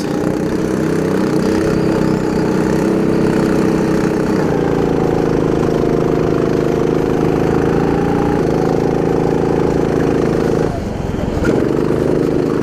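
Go-kart engine heard from onboard, running at steady high revs with its pitch stepping slightly a couple of times. Near the end the engine drops off briefly and then picks up again as the kart takes a corner.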